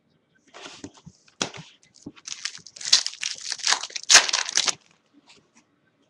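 Foil trading-card pack wrapper crinkling and tearing as a pack is ripped open and handled, in a run of crackly bursts that is loudest a few seconds in and stops shortly before the end.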